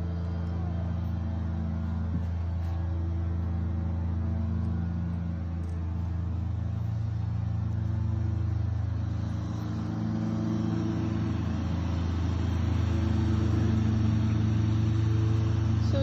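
Lawn mower engine running steadily with a low hum, growing louder in the second half.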